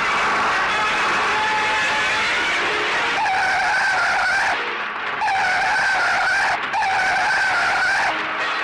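Car engine noise and tyres squealing. From about three seconds in comes a steady high squeal, cut off twice briefly.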